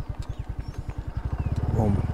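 Small scooter's single-cylinder engine running at low speed, a quick, even putter; the throttle opens about one and a half seconds in and it gets louder.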